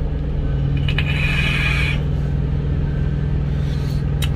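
Vehicle engine idling, a steady low hum heard from inside the cab, with a soft hiss from about half a second to two seconds in.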